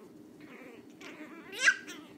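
Chihuahua puppy giving one high-pitched yelping bark that rises in pitch and is loudest about a second and a half in, after a softer lead-in: an angry puppy still learning to bark.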